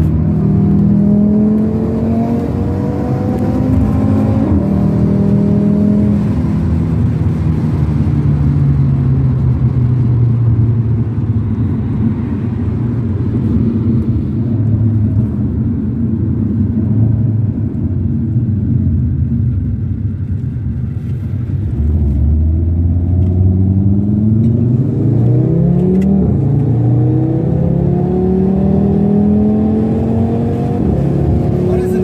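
Car engine heard from inside the cabin under a steady rush of tyre and road noise, rising in pitch as the car accelerates over the first few seconds, then holding a steadier drone at cruising speed. About two-thirds of the way in it climbs in pitch again as the car speeds up once more.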